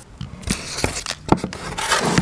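Hands handling a foil-wrapped crayon block against a cardboard box: a few irregular taps with scraping and foil rustling between them.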